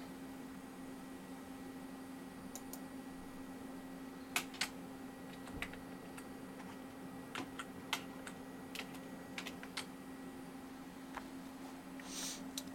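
Scattered keystrokes on a computer keyboard, about a dozen irregular clicks starting around four seconds in, as a login password is typed into Mac OS X, over a steady low hum.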